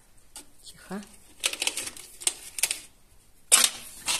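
Potted houseplants being handled and set back on a shelf: a run of light clicks and knocks from pots on the shelf, with leaves rustling, and a louder rustle near the end.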